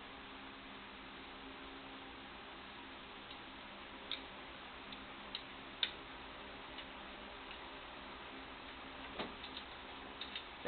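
A few sharp, isolated clicks of a wrench and hardware being handled, the loudest about six seconds in and a short cluster near the end, over a steady low background hum.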